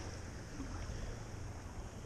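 Steady wash of water with a low rumble, heard from a camera held right at the surface of shallow bay water.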